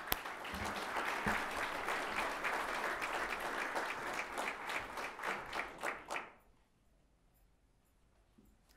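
Audience applauding. The applause thins to a few separate claps and stops about six seconds in.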